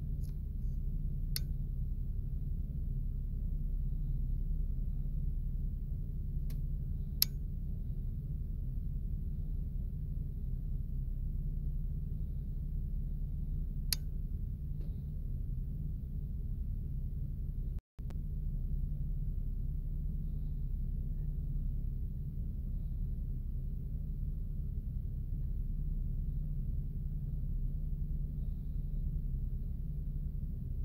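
A steady low rumble and hum, with a few sharp clicks in the first half. The sound drops out for a moment a little past the middle.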